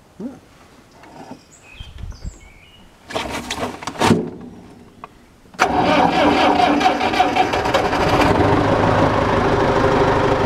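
International 574 tractor's diesel engine being started with its newly replaced Thermostart heat plug: short bursts of noise, then the engine catches about five and a half seconds in and runs steadily.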